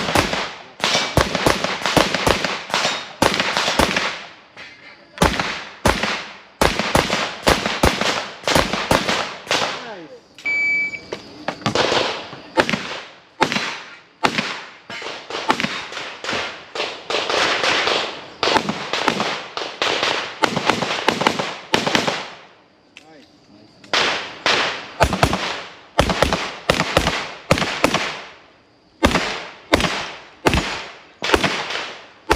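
Handgun shots fired in fast strings during practical pistol shooting stages, each shot sharp with a short echo, broken by brief pauses. A short high beep sounds about ten seconds in, during one of the pauses.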